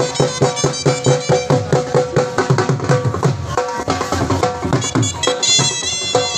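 Traditional music: drums beating a quick, steady rhythm under a held, reedy wind-instrument melody.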